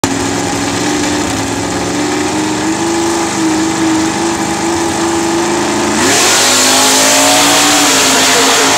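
Drag race car engines held at steady revs on the starting line, then about six seconds in a car launches at full throttle: the pitch sweeps up and the sound suddenly gets louder as it accelerates away down the strip.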